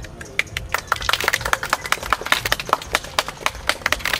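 A small group of people clapping by hand, the claps quick and uneven.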